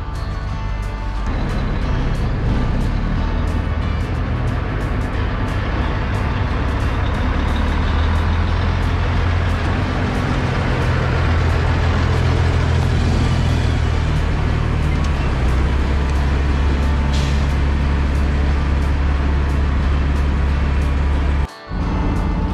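Heavy diesel machinery engine running steadily, its low drone stepping to a new pitch a few times, with music playing over it.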